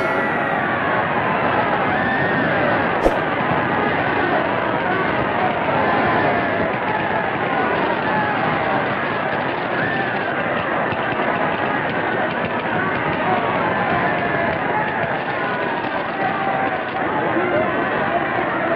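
Boxing-match crowd shouting and cheering, many voices overlapping without letup, on an old film soundtrack with a dull, narrow sound. A single sharp click about three seconds in.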